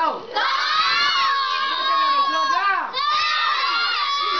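A group of children shouting together in high voices. There is one long drawn-out shout from about a second in to nearly three seconds, then another begins right after.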